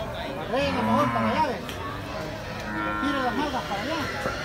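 Cattle mooing: a louder call about half a second in, lasting about a second, and a fainter one near the end, over the steady chatter of a livestock market.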